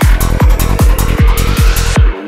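Forest psytrance: a four-on-the-floor kick drum at about two and a half beats a second, a rolling bassline between the kicks, and crisp hi-hats. A synth tone slowly rises in pitch over the beat.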